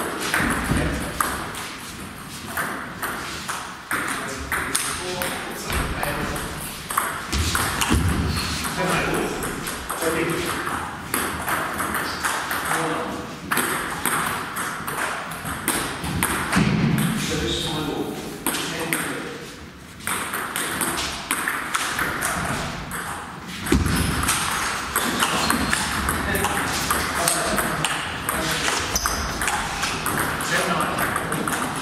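Table tennis ball clicking off the table and the players' bats in rallies: quick runs of sharp ticks, with short breaks between points.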